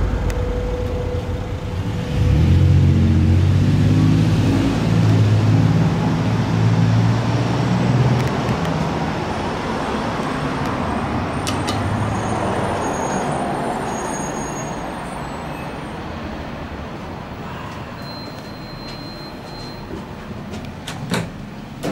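Road traffic: a large vehicle's engine is heard low and loud from about two seconds in for several seconds, then a steady traffic noise slowly fades.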